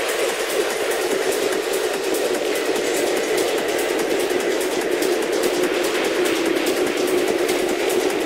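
Industrial techno in a beatless stretch: a noisy, machine-like electronic drone with a held mid-pitched tone that slowly sinks in pitch, over fast, fine ticking in the highs.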